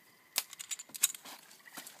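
A handheld BB gun fired at a can: two sharp snaps about two-thirds of a second apart, with fainter clicks between and after. The snaps are no louder than voices nearby.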